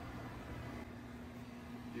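Dometic 16,000 BTU marine air conditioner running: a steady low hum with an even rush of air from the cabin vents.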